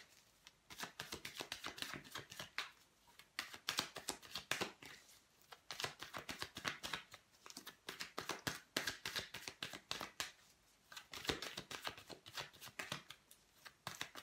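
A deck of tarot cards being overhand-shuffled by hand: rapid runs of light card-on-card slaps and flicks, coming in bursts with short pauses between them.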